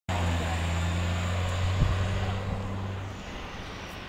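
A motor vehicle's engine running close by, a steady low hum with road noise, which fades away about three seconds in. A single knock sounds a little under two seconds in.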